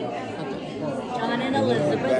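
Voices of several people talking in a large room, indistinct overlapping chatter with no single clear speaker.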